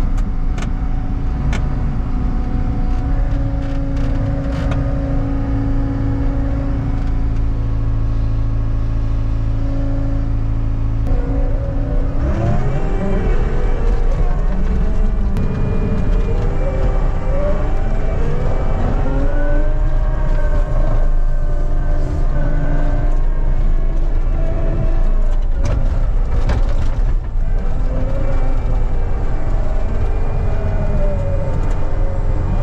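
Skid steer's diesel engine and hydraulics heard from inside the cab. The engine runs steadily at first, then about twelve seconds in it goes to work and its whine rises and falls over and over as the toothed bucket digs soil.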